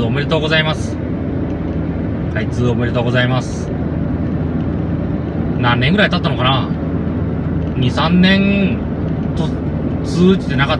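Steady road and engine noise heard inside a moving car's cabin, with short spoken remarks every couple of seconds.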